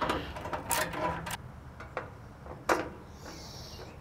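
Screwdriver and screws clicking and knocking against the sheet-metal body of a Camp Chef Smoke Vault as the burner-assembly screws are backed out by hand, with the nuts held behind. A few scattered sharp taps; the loudest comes near the end.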